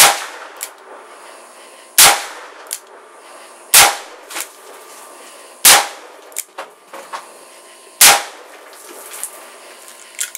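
Five shots from a Smith & Wesson 686 revolver firing .357 Magnum rounds, sharp and very loud, about two seconds apart, each ringing off briefly, with fainter clicks between them.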